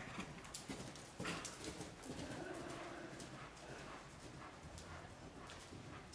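A horse's hooves striking the arena footing in an irregular run of soft beats, with a brief pitched sound about two seconds in.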